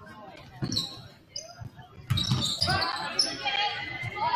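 A basketball bouncing on a hardwood gym floor, with short sneaker squeaks. About two seconds in, loud voices of players and spectators calling out join the bouncing.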